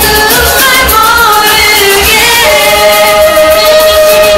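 A woman singing a pop song over its backing track, with a beat underneath; she holds one long note through the second half.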